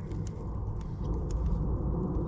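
Steady low background rumble with a few faint light clicks.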